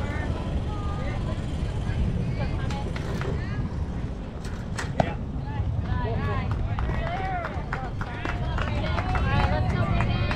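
A baseball bat hits the ball with one sharp crack about five seconds in. Players and spectators shout right after, over a steady rumble of wind on the microphone.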